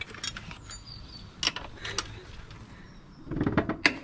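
Steel spanners clinking against each other in a tool roll, then a 14 mm spanner knocking onto and working the bottom rear-shock bolt of a Honda C90: a few sharp metallic clicks spread out, with a louder scuffle near the end.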